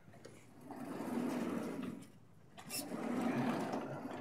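Sliding chalkboard panels being moved in their frame: two rolling scrapes, each about a second and a half long, with a short gap between them.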